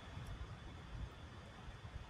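Faint room tone: a low, steady background hiss and hum with no distinct event, between stretches of speech.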